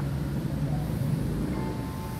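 Steady low mechanical hum, with a faint thin tone coming in near the end.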